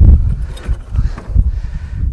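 The buggy's tailgate is dropped open with a thump at the start, then a few light knocks of handling, over a low uneven rumble of wind on the microphone.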